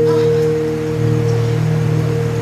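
Electronic keyboard holding a sustained, organ-like chord: one steady high note over low notes, unchanging.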